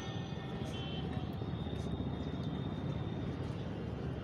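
Steady low rumble of a moving vehicle's road and wind noise on the microphone.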